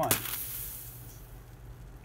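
Improved Piranha pyrotechnic line cutter, loaded with Triple Seven black powder substitute, firing: one sharp pop just after the start, followed by a hiss of escaping gas that fades over about a second. The charge cuts through both cable ties binding the bundled parachute.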